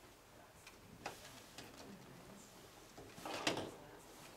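Quiet room with a few scattered light clicks and taps from pencils and pens on paper and tables, and a short, louder rustle about three and a half seconds in.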